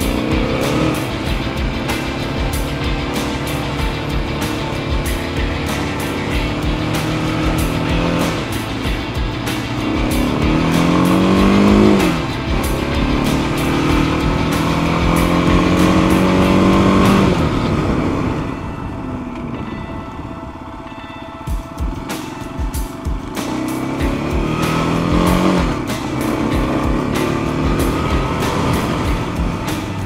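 Dual-sport motorcycle engine accelerating, its pitch climbing through the revs and dropping at each gear shift, several times over; it eases off for a few seconds past the middle. Wind buffets the microphone as it rides.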